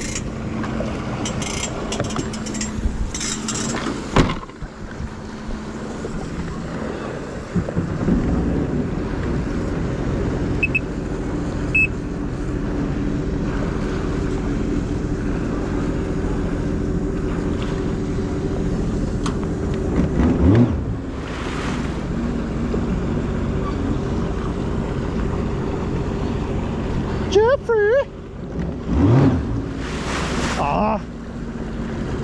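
Sea-Doo personal watercraft engine idling steadily as the ski moves at slow, no-wake speed. There are a few sharp clicks and knocks in the first few seconds, and short voices twice in the second half.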